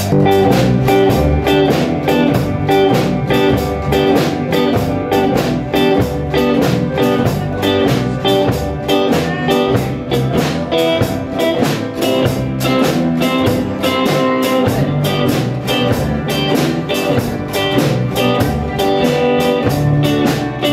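A small ensemble playing together: acoustic and electric guitars strumming chords over a drum kit keeping a steady beat, with saxophone and keyboards in the mix.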